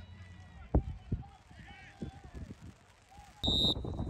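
A few dull thuds of a soccer ball being kicked on grass, the loudest about a second in, under faint distant shouts from the pitch. Near the end a brief high referee's whistle sounds as louder sideline noise comes back.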